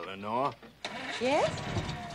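Two short voice-like calls with a gliding pitch, one at the start and one about a second in, over a rumbling background noise.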